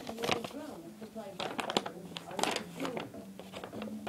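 Paper instruction leaflet and toy packaging rustling and crinkling as it is handled right at the microphone, a run of small irregular crackles.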